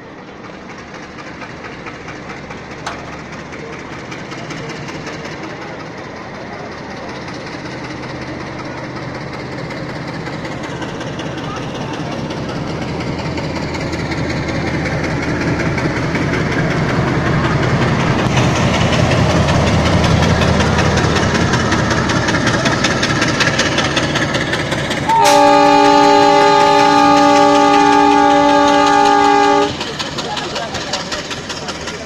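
Indian Railways WDP-1 diesel locomotive running past on the next track, its engine growing steadily louder as it comes alongside, with wheels clattering over the rails. Near the end a loud multi-tone train horn blows for about five seconds and cuts off.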